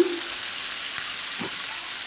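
Freshly added sliced onions sizzling in hot oil in a metal pan, a steady frying hiss. A light knock comes about a second and a half in.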